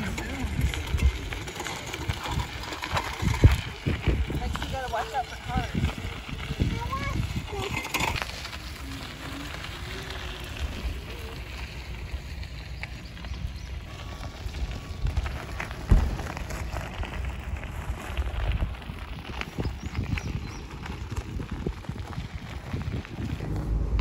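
Wind buffeting the microphone, an uneven low rumble, with faint indistinct voices in the first third.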